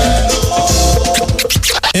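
Radio station jingle music: an electronic beat with held synth notes and bass, with a turntable scratch effect near the end.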